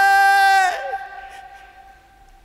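A male singer's long held final note ends with a downward slide in pitch under a second in. A faint sustained note then lingers and fades away as the song ends.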